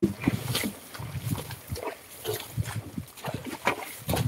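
Carabao hauling a loaded sled through a muddy rice-field track: a string of irregular short noises from the animal and from its hooves and the sled in the mud.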